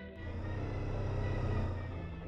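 Motorcycle engine running, picked up by a camera mounted on the bike, over background music. The engine sound comes in just after the start, swells, and falls away near the end.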